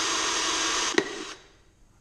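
Cordless drill running at speed, its bit cutting quickly through an aluminium clutch side cover, with a sharp click near the end. It stops about a second and a half in.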